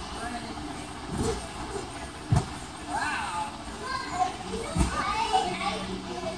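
Children's voices in a large gymnastics hall, with a few deep thuds of children bouncing and landing on a trampoline tumble track.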